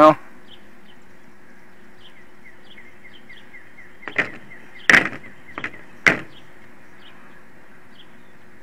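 Skyzone M5 FPV monitor's SD card slot clicking four times in a little under two seconds as a card is pushed in with a small screwdriver; the second click is the loudest. The spring card tray doesn't latch in right.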